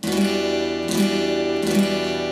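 Acoustic guitar strummed with a pick on an E minor chord with the third fret of the B and high E strings added, an E minor seven voicing. The chord rings out, and it is strummed again about a second in and once more near the end.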